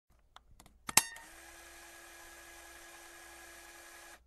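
A few faint clicks, then a sharp click about a second in, followed by a steady hiss with a faint low hum that runs for about three seconds and stops.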